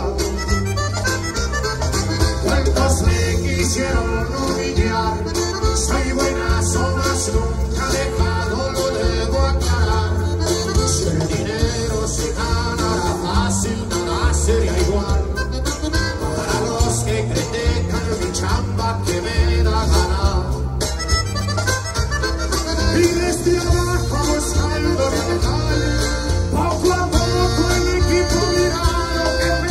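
Norteño band playing a corrido live through a PA: accordion lead over bajo sexto, bass guitar and drums with a steady beat, in an instrumental passage between sung verses.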